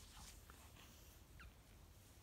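Near silence: room tone, with one faint brief squeak more than halfway through.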